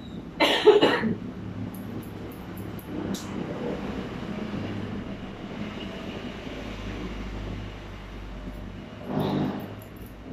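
A loud cough about half a second in, over the steady low hum of a room air conditioner; a few faint sharp snips of barber's scissors follow, and there is a shorter, softer burst near the end.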